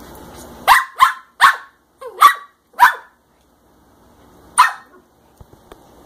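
A small curly-coated dog barking: five short barks in about two seconds, then one more after a pause.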